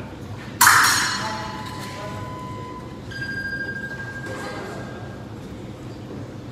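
Electric epee scoring machine sounding a steady beep as a touch registers, starting with a sudden loud hit under a second in. A second, higher-pitched beep follows from about three seconds in to about five.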